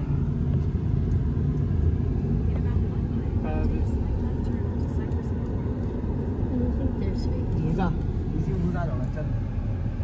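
Steady low rumble of road and engine noise inside a moving car's cabin, with a few faint voices now and then.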